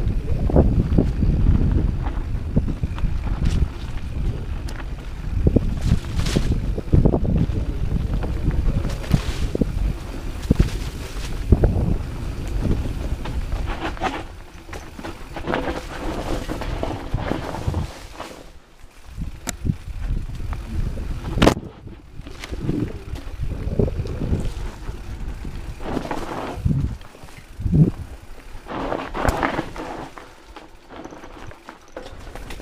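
Rocky Mountain 790 MSL mountain bike descending a dirt singletrack: an uneven rumble of tyres over the ground, the bike rattling and wind buffeting the microphone, with a few sharp knocks from bumps. It eases off briefly about two-thirds of the way through.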